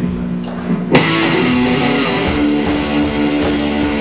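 Live rock band with electric guitars starting a song: a held guitar note, then the full band comes in sharply about a second in and plays on loudly.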